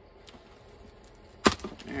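Cardboard shipping box being opened: after a quiet moment, one sharp pop about one and a half seconds in as the taped flap breaks free, followed by brief handling of the cardboard.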